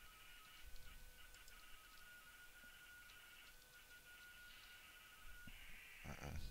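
Near silence: faint room tone with a thin, steady whine.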